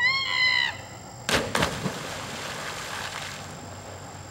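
Two swimmers jumping off a wooden diving tower into a lake: a short yell as they leap, then two splashes a third of a second apart just over a second in, and the water spray settling for about two seconds.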